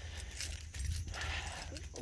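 Faint clinking of small metal pieces over a steady low rumble on the microphone.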